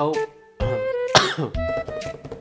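A man's single cough about a second in, the loudest sound here, over background music with steady flute-like notes.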